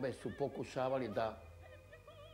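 An elderly man speaking, his voice falling in pitch, stopping about a second and a half in. Faint background music with held, wavering notes runs beneath and carries on after he stops.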